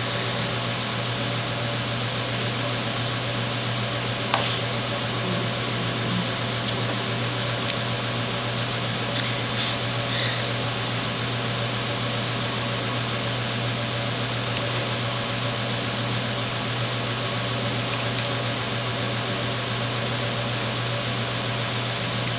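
Steady machine hum and hiss from a running room appliance. A few faint light clicks from handling paper pieces and a glue pen come between about four and ten seconds in.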